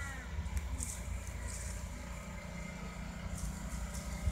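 Quiet outdoor background with a low, steady rumble.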